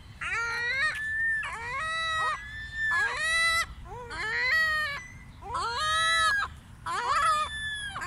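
Ring-billed gulls calling: a run of about seven high, wailing calls, roughly one a second, each rising at the start and then held.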